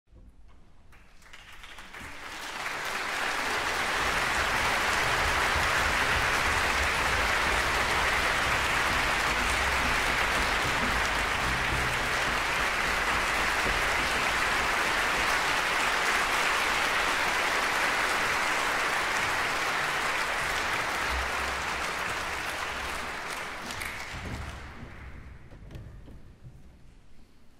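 A large concert-hall audience applauding to greet the violin soloist. The applause builds over the first few seconds, holds steady, then dies away near the end.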